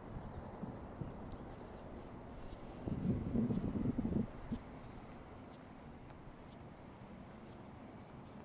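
Footsteps walking across the glass-panelled deck of the Sundial Bridge. About three seconds in comes a louder, muffled noise lasting a little over a second.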